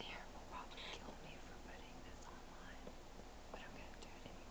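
A woman whispering softly, close to the microphone.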